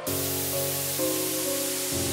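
Slow instrumental hymn music: held chords over a steady hiss, with the chord changing about a second in and again near the end.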